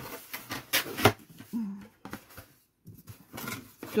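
A cardboard box being handled and turned over, giving irregular knocks and rustles with two sharper knocks about a second in. A brief low voiced sound comes near the middle.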